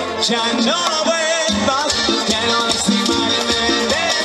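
Cuarteto band playing live: a keyboard melody over bass and percussion with a steady dance beat. The bass drops out for a moment about a second and a half in, then comes back in.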